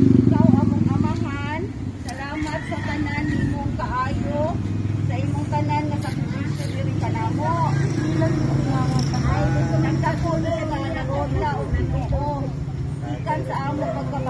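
Several people talking over the steady low hum of an idling car engine, loudest in the first second.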